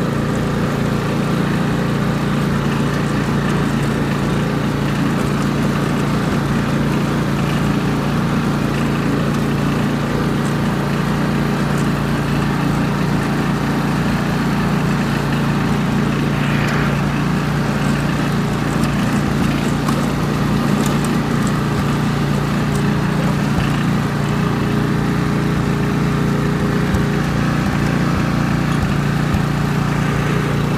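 Ride-on lawn mower's small engine running steadily as the mower is driven, an even hum at constant level.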